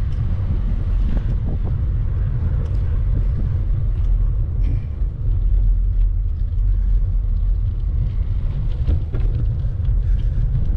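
Steady low rumble of wind buffeting the microphone and tyres rolling over a gravel road during a bicycle ride.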